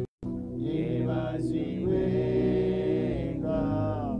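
Slow worship singing: a man's voice holding long, chant-like notes over sustained musical accompaniment. The sound cuts out briefly just after the start.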